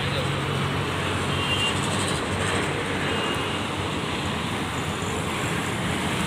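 Steady road traffic noise from motorbikes, scooters, cars and auto-rickshaws running along a city road.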